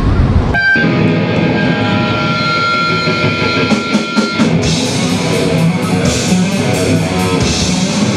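A loud noisy burst cuts off about half a second in. It is followed by a live death metal band: a held electric guitar note rings out over a quieter backing, then drums and cymbals come in about four seconds in and the full band plays.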